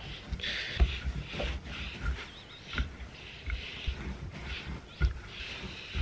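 Wooden rolling pin rolling out bread dough on a floured silicone mat: repeated soft swishing strokes, roughly one a second, with a few dull knocks of the pin and hands on the board.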